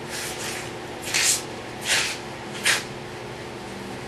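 Cloth work gloves rubbing as a small silver disc is handled: a soft rustle, then three short, scratchy swishes at about one, two and nearly three seconds in.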